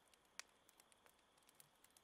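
Near silence, with a faint single click about half a second in.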